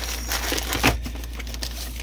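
Plastic bags crinkling as tools and parts are rummaged through in a plastic toolbox, with a short sharp click a little under a second in.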